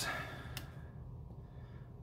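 A quiet pause: a faint, steady low room hum, with a soft hiss fading out in the first half second.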